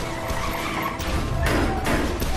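Action-film soundtrack: music over a car's engine and skidding tyres, with a louder swell near the end.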